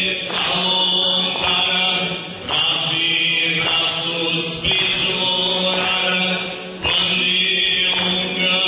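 Aromanian folk music played live: a melody over a steady low drone, in repeated phrases of about two seconds, with brief breaks about two and a half and seven seconds in.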